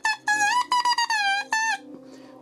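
A hand-made oboe reed blown on its own (crowing), tested after its tip has been clipped to raise its pitch. It gives several short, high notes that slide in pitch and break off between blows.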